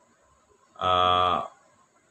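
A man's voice holding one steady, low drawn-out sound for about half a second near the middle, a wordless hesitation sound between phrases.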